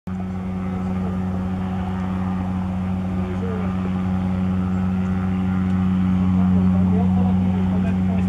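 A steady, low engine drone that slowly grows louder, with faint voices in the background.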